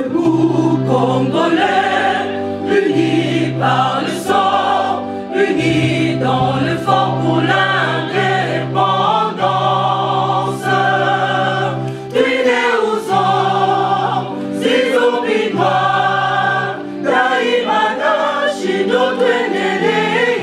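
Gospel-style choir music: a choir singing over a steady, repeating bass line, starting suddenly at the beginning.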